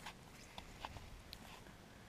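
Small wood campfire crackling faintly: a handful of scattered small pops over a low hiss.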